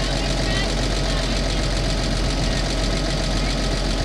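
Toyota Land Cruiser FJ45 engine idling steadily, a low, even hum heard from the vehicle itself.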